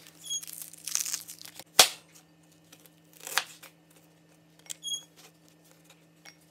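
Dry onion skin crackling and tearing as it is peeled off by hand, then a sharp knock on a plastic cutting board about two seconds in, the loudest sound. Later come two short strokes of a chef's knife cutting through the onion onto the board.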